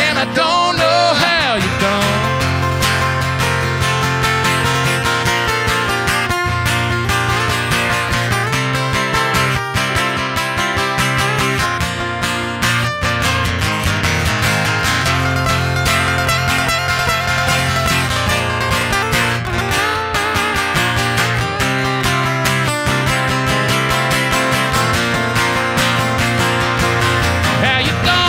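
Two acoustic guitars playing an instrumental break in a country song, strummed chords steady throughout, with the last sung note fading in the first second.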